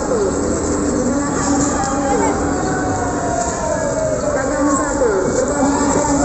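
Several people's voices talking indistinctly over a steady low background rumble.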